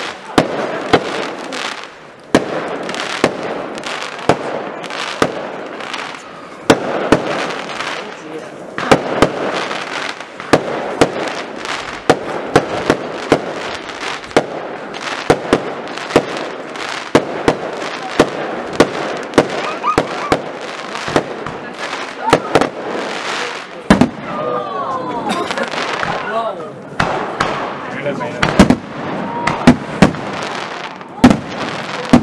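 A fireworks display going off: a dense, irregular run of sharp bangs and reports, one or two a second, over a continuous rumble of bursting shells.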